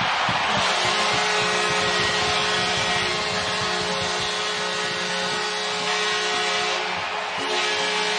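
Arena goal horn sounding a long steady blast over a cheering crowd, signalling a home-team goal.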